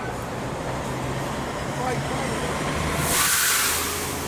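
City bus idling at the curb with a steady low engine hum, then a loud hiss of released air about three seconds in that lasts nearly a second, typical of a bus's air brakes or doors.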